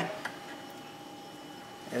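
Quiet room tone with a faint steady hum, between a man's spoken words.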